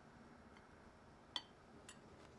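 A metal fork clinking against a ceramic plate: one sharp, briefly ringing clink about a second and a half in and a softer click near the end, over near-silent room tone.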